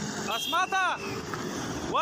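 Men's voices shouting briefly, once about half a second in and again near the end, over steady wind and traffic noise.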